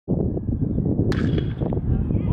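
Metal baseball bat hitting a pitched ball once, about a second in: a sharp crack with a brief ringing ping. Low wind rumble on the microphone runs underneath.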